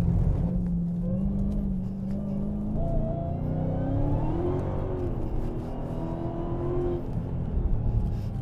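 A car engine heard from inside the cabin under load on track: a steady drone that rises in pitch from about two and a half seconds in as the car accelerates, then holds at the higher pitch, over a constant low road rumble.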